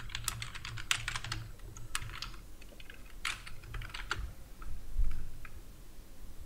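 Typing on a computer keyboard: a quick run of keystrokes that thins out to a few isolated clicks after about four seconds. A soft low thump comes about five seconds in.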